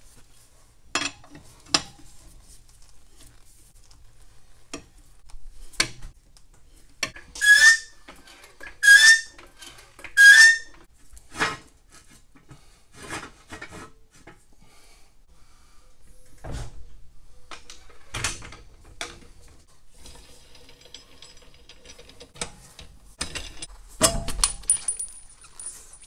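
Scattered clinks, knocks and scrapes of hand tools and metal parts as a Ford Model A's rear wire-spoke wheel is unbolted and taken off its hub. Around the middle come three louder strokes, each with a short squeak, about a second and a half apart, and near the end a louder scraping clatter as the wheel is pulled off the studs.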